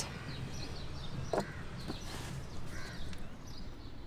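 Quiet background: a steady low hum with faint bird chirps, and one soft click about a second and a half in.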